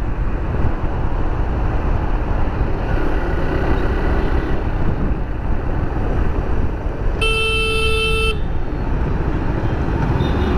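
Steady wind and road noise from a motorcycle riding through city traffic. A vehicle horn sounds once, a steady honk of about a second, late on.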